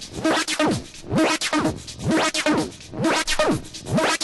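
Progressive/tech house track playing: a looped electronic pattern of sounds gliding down and up in pitch, repeating in a cycle of about two seconds.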